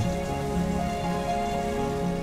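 Soft instrumental background music with long held notes over a steady hiss.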